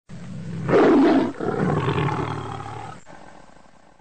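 Big cat roar sound effect: one loud roar about a second in, then a second, longer roar that trails off and fades out near the end.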